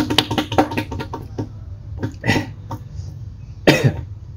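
Background music with a quick, even percussive beat, broken by two short vocal bursts, the louder one near the end: a man coughing from the burn of chilli peppers.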